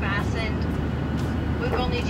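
Steady low drone of an airliner's cabin noise in flight, with a voice briefly at the start and again near the end.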